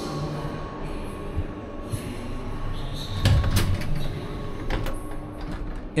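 Inside a standing passenger train coach: a steady hum, broken a little past halfway by a door's heavy thud and a few clicks, as of the sliding door between vestibule and saloon.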